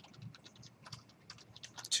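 Typing on a computer keyboard: a run of uneven keystrokes that come closer together near the end.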